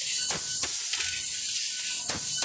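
Automatic book-binding machine running: a steady high hiss with two sharp mechanical clacks close together in the first second.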